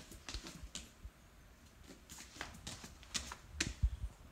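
Faint, scattered taps and creaks of bare feet shifting on a surfboard lying on carpet, growing busier near the end with a low thump just before it finishes.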